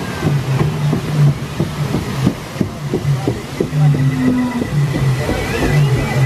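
Rushing, splashing water around a river-rapids raft as it rides over the ride's metal conveyor ramp. Repeated low rumbling pulses and knocks come from the raft running across the conveyor.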